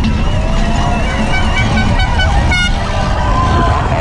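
Downhill mountain bike at race speed on a rough dirt trail: steady wind and trail rattle on the bike-mounted mic. Over it, spectators shout and noisemakers toot several short notes in the middle.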